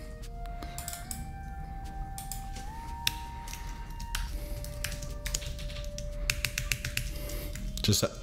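Typing on a computer keyboard, with mouse clicks: a run of irregular sharp clicks. Under it run a low steady hum and soft held tones that step up and down in pitch, like quiet background music.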